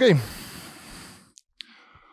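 A man's drawn-out "okay" falls in pitch and trails into a long breathy exhale, a sigh into a close microphone. Two short clicks follow a little after halfway.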